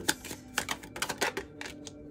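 A tarot deck being shuffled by hand: a quick run of sharp card clicks that thins out near the end, over a faint steady low tone.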